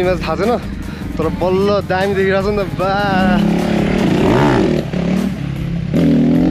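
A dirt bike's engine revving up and dropping back in the second half, after a stretch of voices.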